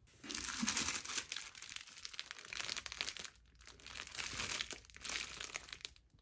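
Clear plastic wrapping on a pair of disposable hotel slippers crinkling as it is handled and a slipper is pulled out of the bag. It comes in two long spells of crackling with a short break a little past halfway.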